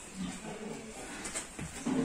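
A boar mounting a young gilt in mating, with a few soft, low grunts from the pigs.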